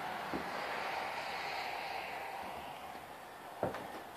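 A steady rushing noise that swells over the first couple of seconds and then fades, with a faint knock near the start and another near the end.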